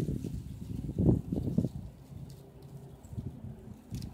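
Fingers scratching through lawn grass close to the microphone: low, uneven rustling and scraping, heaviest about a second in, then softer.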